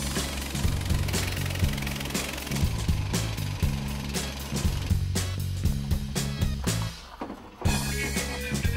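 Background music with a steady beat and a bass line, with a short break near the end.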